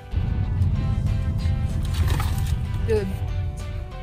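Background music over a loud low rumble that starts suddenly and fades toward the end. A woman says "It's good" near the end.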